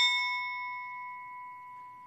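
A bell struck once, ringing on with a clear, several-toned note that slowly dies away. It is tolled to mark a name just read in a memorial roll call.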